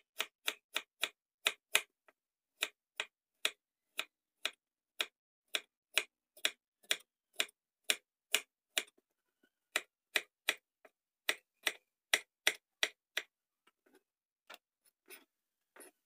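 Kitchen knife slicing unripe papaya into strips on a cutting board: a steady run of sharp knocks, about two to three a second, each stroke of the blade striking the board. The strokes thin out and grow fainter near the end.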